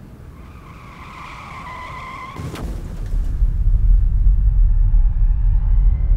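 A high squeal lasting about two seconds, cut off by a sudden sharp impact, followed by a loud low rumble that swells.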